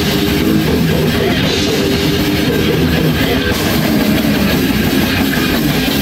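Live death metal band playing: distorted electric guitars, bass and a drum kit going loud and without a break.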